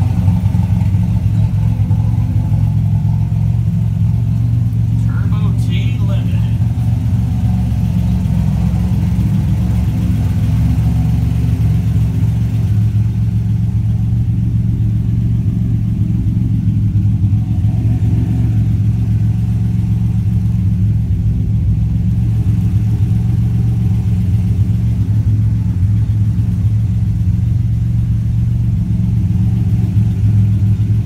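Turbocharged 4.1-litre stroker Buick V6 of a 1987 Regal Turbo T idling steadily.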